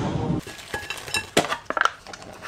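A metal table knife clinking against dishes, about five sharp clinks, some with a brief ring.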